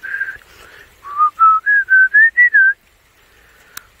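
A person whistling a short tune in clear single notes: one held note at the start, then a quick run of about seven evenly spaced notes climbing in pitch and dropping on the last.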